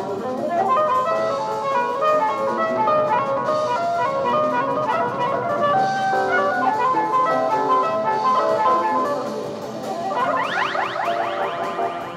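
Jazz-fusion band recording: a busy line of quick, short notes over drums and bass. Near the end a flurry of rapid rising pitch sweeps comes in.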